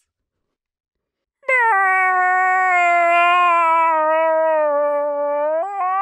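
Silence for about a second and a half, then a man's long, high-pitched scream held on one note, sagging slightly in pitch and wavering near the end.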